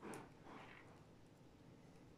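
Near silence: room tone, with two faint, brief noises in the first second.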